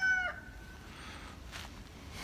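The end of a rooster's crow: a high, held call whose last note drops off about a third of a second in, then a quiet outdoor background.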